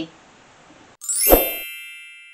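Logo-intro sound effect: about a second in, a sudden hit with a rising swoosh and a bright bell-like chime that keeps ringing and slowly fades.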